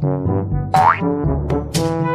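Bouncy comic background music, a run of short staccato notes, with a quick rising glide sound effect about three-quarters of a second in.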